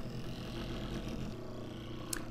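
Toy gyroscope's rotor spinning fast close to the microphone, a faint steady whirring hum as it precesses on its stand.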